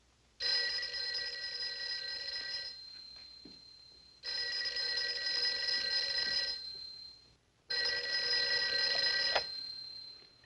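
A rotary desk telephone's bell rings three times. Each ring lasts about two seconds and trails off, and the third is cut short near the end, with a click, as the receiver is picked up.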